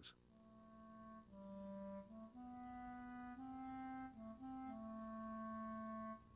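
Background music: a solo clarinet playing a slow melody of long held notes.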